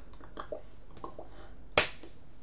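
One sharp slap of hands striking together near the end, the loudest sound, made while signing. Before it come a few faint short clicks of the signer's hands and mouth.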